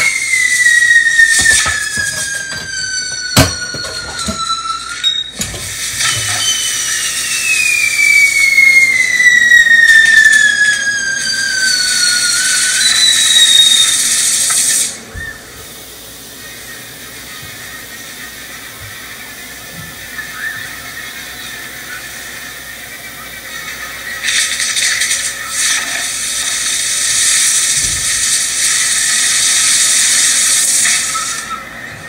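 Fireworks going off: long whistles sliding down in pitch, one after another, over a crackling hiss of sparks, with a few sharp cracks in the first few seconds. About halfway through it drops quieter, then the hissing and crackling of sparks builds again near the end.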